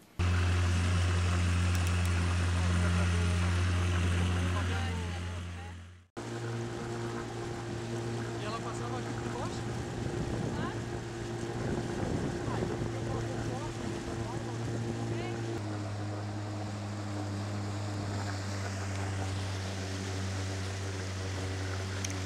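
Small boat's motor running at a steady speed on the river, with wind and water noise on the microphone. It fades out about six seconds in, then carries on at a slightly higher pitch, which shifts again about two-thirds of the way through.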